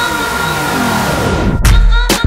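Electronic dance music in a DJ mix transition: a noise sweep whose high end closes off while a pitch glide falls, then about one and a half seconds in the beat drops back in with heavy bass kicks and sharp percussion hits.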